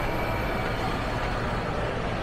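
Steady indoor background noise of a large hall: an even low rumble with no distinct events.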